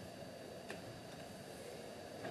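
Quiet room tone of a large chamber heard through the broadcast microphones, with one faint click about two-thirds of a second in.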